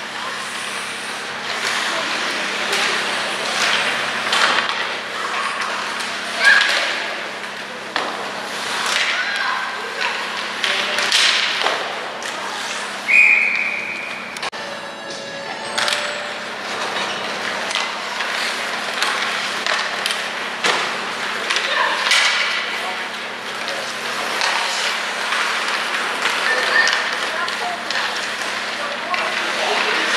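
Ice hockey game sounds in a rink: scattered clacks of sticks and puck and skates on the ice, with voices, over a steady low hum. A single short referee's whistle sounds a little before halfway, stopping play for a faceoff.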